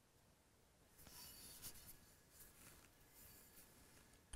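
Near silence, with faint rustling handling noise from about one to two seconds in as a chef's knife is turned over in a bare hand.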